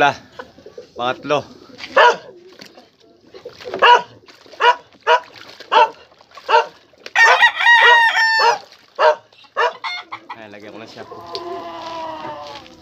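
Roosters clucking in a run of short, evenly spaced calls, with one rooster crowing about seven seconds in.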